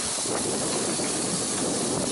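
Steady rushing hiss of wind and water on a catamaran under sail.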